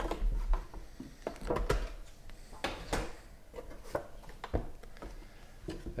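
Trading-card boxes being handled and set down on a table: a scatter of light knocks, taps and scrapes of packaging.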